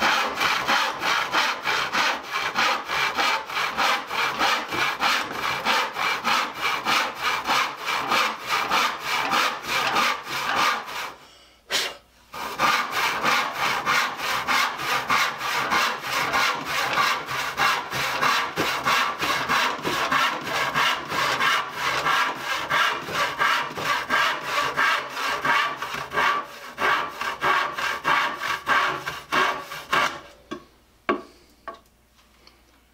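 Disston No. 12 handsaw (10 teeth per inch) cutting through a wooden board by hand, in a steady rhythm of about two strokes a second. It stops for about a second near the middle, then carries on.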